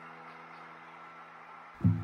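Background music: one chord held steady, with a new, louder chord coming in near the end.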